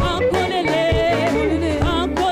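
A woman singing a gospel worship song through a microphone, her voice bending and ornamenting the melody, over band accompaniment with steady held bass notes.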